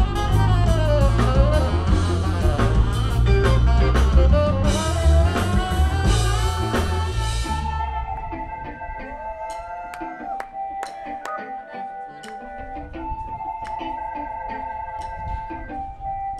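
Live funk band playing: drums and bass drive along under guitar and horn lines, with a cymbal wash about five seconds in. Near the halfway point the drums and bass drop out, leaving a few held notes and light ticks at a lower level.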